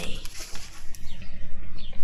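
Sheets of card and paper being shuffled and handled, over a steady low drone from a tractor cutting hedges.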